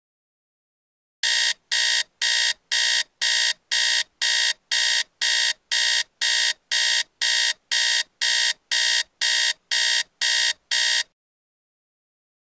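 iPhone alarm ringing: a high, evenly repeated beeping, about two to three beeps a second, that starts about a second in and cuts off suddenly near the end as it is switched off.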